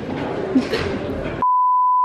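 An edited-in test-card tone, a single steady beep, replaces the hall chatter about one and a half seconds in. It is louder than the chatter and cuts off abruptly.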